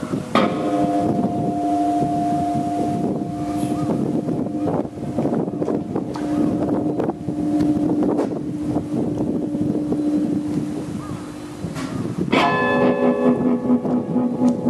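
Electric guitar, a Fender Telecaster through a small Fender Champ tube amp, played as free improvisation: long held, droning notes over a rough, gritty texture. About twelve seconds in, a fuller chord with many overtones comes in.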